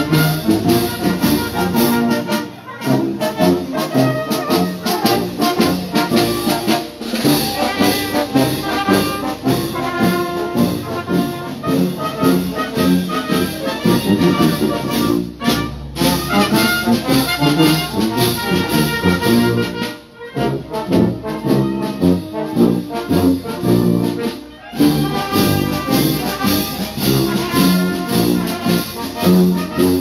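A brass band, with sousaphones close by, playing a march while marching. There are a few short breaks in the playing.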